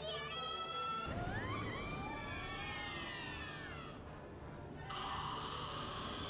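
Anime episode audio playing: an excited cartoon voice at the start, then a run of overlapping high-pitched tones that rise and fall over background music.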